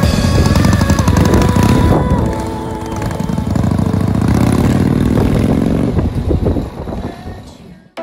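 Harley-Davidson chopper's V-twin engine pulling away: a loud low pulsing, a brief dip about two seconds in, then rising pitch as it accelerates. It fades into the distance before the end.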